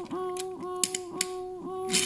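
A child humming a repeated steady note, about three short notes a second, in imitation of a level-crossing warning bell. A few sharp toy clicks come in the middle.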